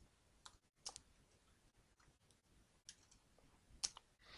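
A few faint, sharp computer keyboard key clicks, spaced out over the stretch, with near silence between them; the last, near the end, is the loudest.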